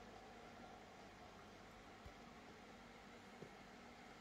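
Near silence: room tone with a faint steady hum, and one soft click about two seconds in.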